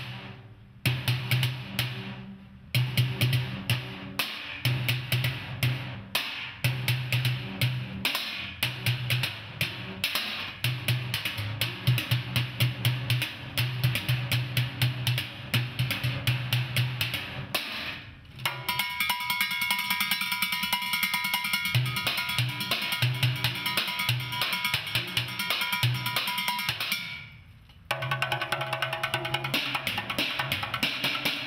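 Drumsticks playing a fast rhythmic solo on upturned metal trash cans, trash-can lids and a plastic water jug, with deep hollow hits under quick clattering strokes. From about two-thirds of the way in, a stretch of fast even strokes sets the metal ringing with sustained overtones. After a brief drop near the end, the drumming resumes.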